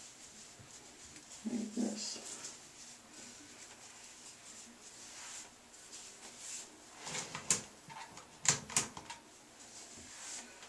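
Faint rustling and a few sharp brushing clicks, about seven to nine seconds in, from hands wrapping yarn around long yarn braids, over quiet room tone. A brief voice sound comes about a second and a half in.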